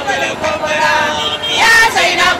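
A crowd of marchers, mostly women, chanting together in a sing-song unison; a louder voice near the microphone stands out near the end.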